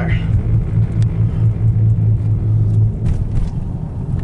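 Road noise inside a moving car crossing a steel truss bridge: a steady low hum from the tyres on the bridge deck, which drops away about three seconds in as the car comes off the bridge.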